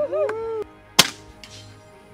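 A single sharp crack from a scoped air rifle firing, about a second in, with a faint tick about half a second later.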